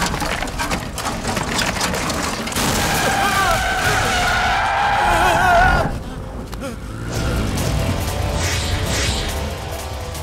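Film action soundtrack: crash effects of a car smashing through a roadside stall, with impacts and flying debris, over a dramatic background score. The crash noise drops away about six seconds in, leaving the music.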